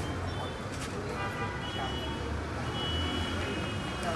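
Steady low background hum with faint high-pitched tones that come and go, and a few light clicks.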